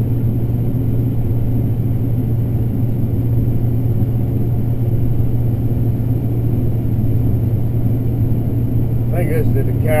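Combine harvester running steadily while shelling corn, heard from inside the cab as an even low drone. A man starts talking near the end.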